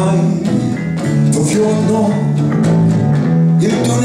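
Live acoustic guitar and electric bass guitar playing a song together, the bass holding steady low notes under a strummed guitar.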